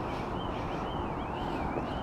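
Wind rushing over the microphone, a steady noise with no speech, and underneath it a faint high whine that rises and falls about twice a second.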